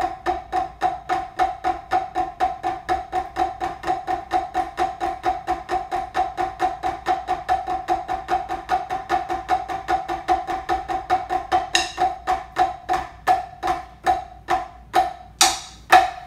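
Drumsticks playing alternating flams on a rubber practice pad mounted on a wooden base: an even run of crisp strokes, about five a second. From about twelve seconds in the strokes slow and spread out, with a few sharper, brighter clacks, the loudest just before the end.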